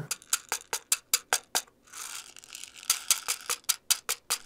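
Fingertip taps on a small hardwood pocket cajón (cajón de bolso) held with its sound hole turned upward, showing the timbre that position gives. Sharp, dry taps come about five a second, then a short pause with a faint hiss, then another run of quick taps near the end.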